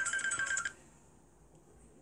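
A storybook app's sound effect: a high, rapidly pulsing trill on one steady pitch that cuts off suddenly under a second in, leaving faint room tone.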